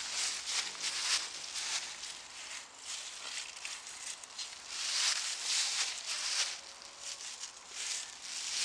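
Dry fallen leaves crunching and rustling as they are walked over, in uneven crackly bursts that are louder about five to six and a half seconds in.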